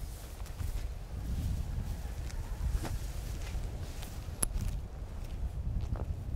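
Low, steady wind rumble on the microphone with faint scattered rustles and ticks, and one sharp click about four and a half seconds in.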